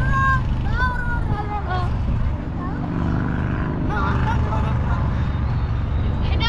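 Short bits of talking over a steady low rumble.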